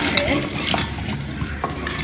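A wooden spoon stirring unpopped popcorn kernels in hot oil in a pot: a steady sizzle of oil under the scraping of the spoon and kernels against the pot, with a few sharper knocks.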